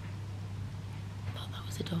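Quiet room with a steady low hum, then a single whispered word near the end.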